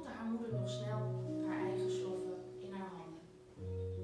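Electronic keyboard playing slow, sustained chords, with a new chord about half a second in and another just before the end.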